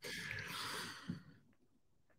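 A person sighing into a close microphone: one breathy exhale lasting about a second.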